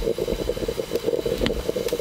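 A small electric motor buzzing steadily, its level wavering rapidly.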